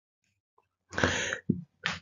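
A man's short breathy throat sound, like a cough, about a second in, followed by two brief puffs of breath.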